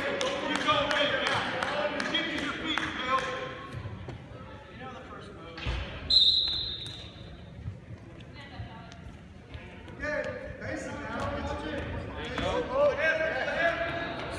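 Shouting voices of coaches and spectators echo in a gym. About six seconds in comes a heavy thump, then a referee's whistle blast of about a second and a half.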